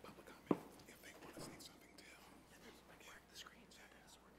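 Faint, indistinct low voices of several people talking among themselves, with one sharp knock about half a second in.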